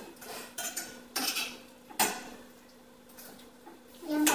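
Cutlery clinking and scraping on dinner plates as people eat: a handful of short, sharp clinks over the first two seconds, the loudest about two seconds in, then only light clatter.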